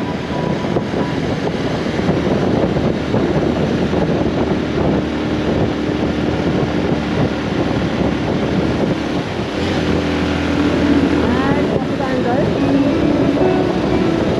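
Wind rushing over a helmet-mounted microphone on a moving motorcycle, with the bike's engine and tyres running steadily beneath; a low engine hum grows stronger about two-thirds of the way through.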